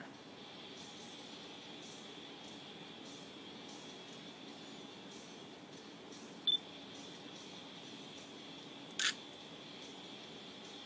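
Nikon point-and-shoot camera in use: a short electronic beep about six and a half seconds in, the focus-confirm signal, then a shutter click about nine seconds in as the picture is taken. A faint steady hiss with a thin whine lies underneath.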